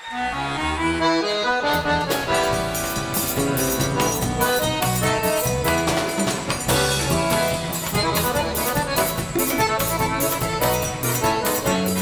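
Forró band playing an instrumental intro led by a piano accordion, with bass and drum kit keeping a steady beat that comes in fully about two seconds in.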